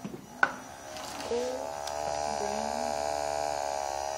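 A sharp click, then from about a second in the Sea Perch ROV's small 12-volt thruster motors run out of the water with a steady buzzing whine at an even pitch.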